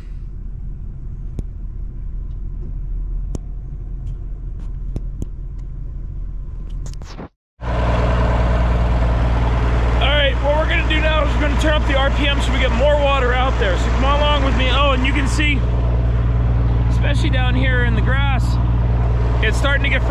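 Irrigation pump engine running steadily at a constant speed. It is quieter and farther off for the first seven seconds; after a brief dropout it is loud and close. A man talks over it in the second half.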